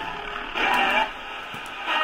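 Portable radio playing thin, muffled music-like audio with no deep bass or treble, swelling louder about half a second in and again near the end.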